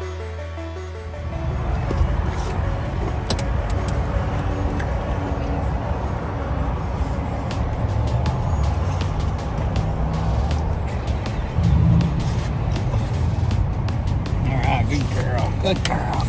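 Background music ends about a second in, giving way to a dog eating and licking from a ceramic bowl: many small sharp clicks over a steady low rumble. A man's voice murmurs near the end.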